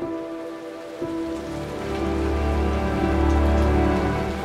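Steady rain falling on a courtyard, under background music of sustained notes; a deep low note swells from about a second in and grows louder toward the end.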